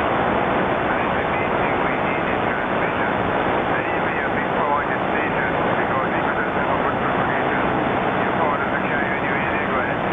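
Shortwave transceiver's speaker giving steady, loud band static and hiss, with a weak, distant sideband voice barely breaking through underneath: a faint long-distance station on a band with poor, fading conditions.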